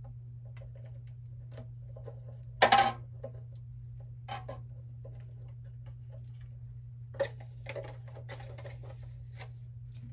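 Rolled aluminium foil crinkling in short, irregular bursts as it is bent into a hook, loudest about three seconds in, with faint ticks between, over a steady low hum.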